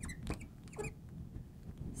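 Marker writing on a glass lightboard: a few short squeaks and taps as the strokes are drawn, mostly in the first second.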